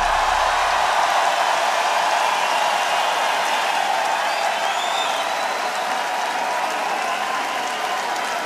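Large arena audience applauding and cheering, a dense steady roar of clapping that eases slightly toward the end.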